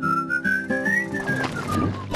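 A whistled tune over an instrumental song accompaniment. The whistle is one long line that rises gently, then falls away near the end.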